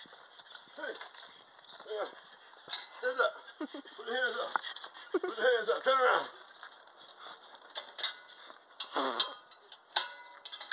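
Wordless human vocal sounds with a wavering pitch, loudest from about three to six seconds in, with a shorter one near the end.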